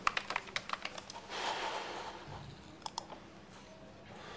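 Typing on a computer keyboard: a quick run of key clicks in the first second, a brief soft rustle, then a few more keystrokes about three seconds in.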